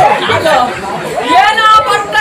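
Speech only: people talking, in Telugu.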